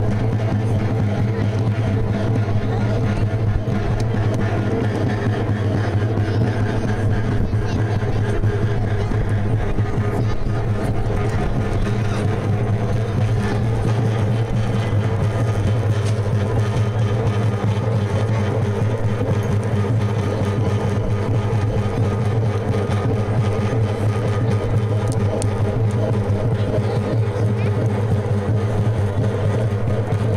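Music for a Tarahumara dance: a steady low drone under continuous fast rattling and clatter, mixed with crowd voices.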